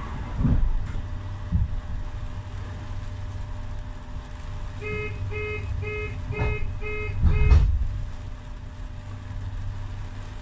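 Street traffic rumble from passing vehicles, swelling loudest as a car goes by about three-quarters of the way through. Midway, a run of six short electronic beeps, about two a second, sounds over it.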